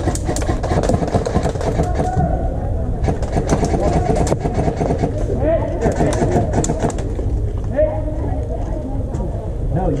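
Muffled, indistinct talking over a heavy low rumble on the microphone, with many short sharp clicks scattered through.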